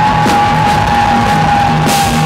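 Live punk rock band playing loud, with guitars and drums, and one long high note held steady over the top.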